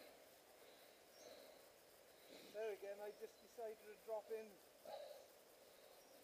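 Faint voices talking softly, starting a couple of seconds in, over an otherwise near-silent background.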